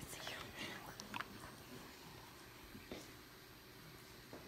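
Hushed whispering from people hiding in a dark room, mostly in the first second or so, then dying away to quiet, with a single faint click about three seconds in.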